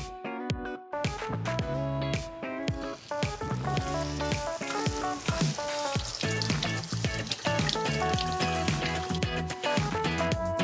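Black bean burger patties frying in hot vegetable oil in a nonstick skillet; the sizzling starts about a second in and grows fuller as they cook. Background music with plucked guitar plays over it and is the louder sound.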